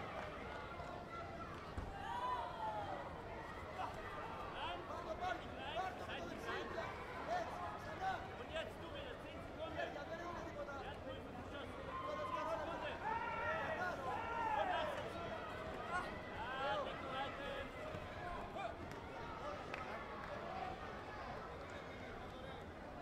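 Hubbub of many voices talking and calling out at once in a crowded sports hall, with a louder stretch of shouting a little past halfway.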